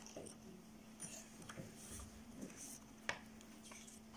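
Faint paper rustling as a picture book's pages are turned and a small letter card is taken out of one of its envelopes, with a light tap about three seconds in, over a low steady hum.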